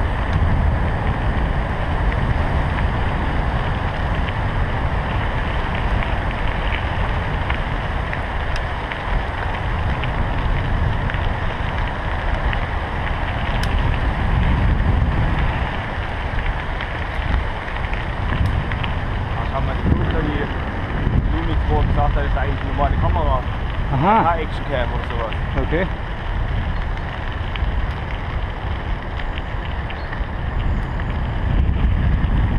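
Steady wind buffeting a bike-mounted action camera's microphone while riding a mountain bike along a gravel path, with the rumble of tyres on gravel underneath.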